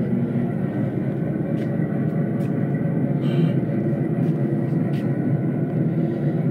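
A GP9 diesel locomotive's idle played by a scale locomotive's onboard sound system and subwoofer: a steady diesel idle, with a short hiss about three seconds in.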